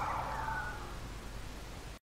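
A hiss fading away over about two seconds: the dying tail of a sudden burst of sound that began just before, with a faint tone sliding downward inside it.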